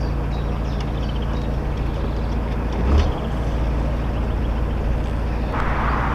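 Narrowboat's diesel engine running steadily under way, a low even drone. There is a brief low thump about three seconds in, and a rush of noise builds near the end.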